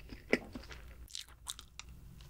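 Close-miked chewing of mixed berry chocolate cake, soft and wet, with a few sharp mouth clicks. The loudest click comes about a third of a second in.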